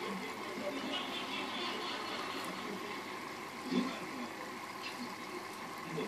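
Steady bubbling and trickling water from an air-driven box filter in a small aquarium, with a brief low sound about four seconds in.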